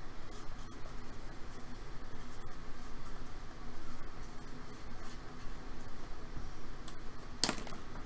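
Sharpie marker writing on a card holder: faint scratching over a steady background hiss, then a short bump near the end.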